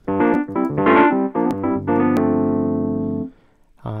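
Casio Privia Pro PX-5S stage keyboard playing its 'Dist60's EP' preset, a distorted 1960s reed-style electric piano tone: a quick run of notes and chords, then a chord held for about a second and a half that stops abruptly when released. Two brief clicks sound partway through.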